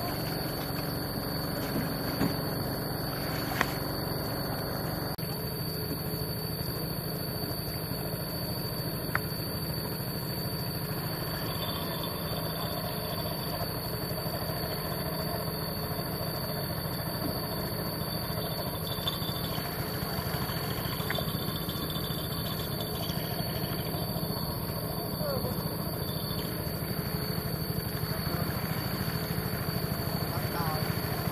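Engine of a small wooden river longboat running steadily as it crosses the water, a constant low drone, with a steady high whine above it and a few faint clicks.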